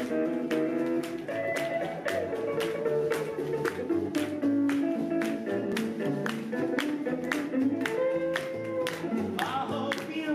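Rockabilly band playing an instrumental passage: a guitar melody over upright bass and a steady beat.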